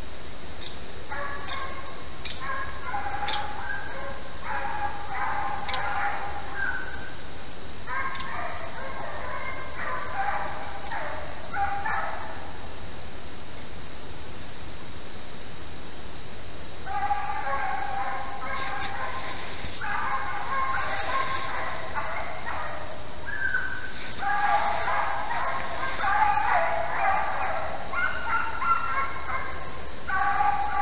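A pack of beagles baying on a hare's trail, several voices overlapping in runs of calls, falling silent for a few seconds in the middle before taking up again.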